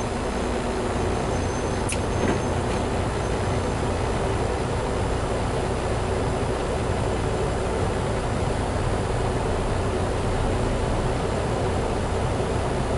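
Semi-truck diesel engine and road noise heard inside the cab, a steady low rumble as the truck rolls slowly in traffic, with one short click about two seconds in.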